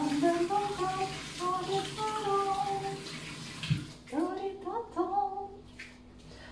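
Kitchen tap running into a stainless-steel sink as tomatoes are rinsed under it, with a woman humming a tune over the water. The water shuts off with a low knock a little under four seconds in, and the humming carries on.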